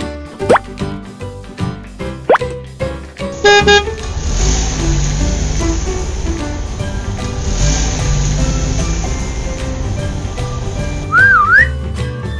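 Children's background music with cartoon sound effects: two quick rising whistle swoops, a short horn-like honk, then several seconds of a steady car-engine rumble and hiss as the toy camper van moves, and a wobbly whistle near the end.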